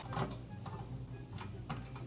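A few faint, irregular clicks of a screwdriver working the mounting screws of a Cooler Master Hyper 212 EVO CPU cooler as they are loosened, over a low steady hum.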